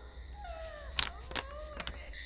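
Faint, thin cries that rise and fall in pitch, one drawn-out falling cry and a shorter arching one, with a few light clicks.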